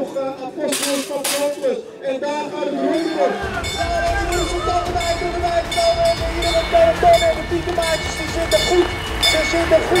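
A race announcer speaking over a public-address loudspeaker. From about three seconds in, a low rumble runs under the voice.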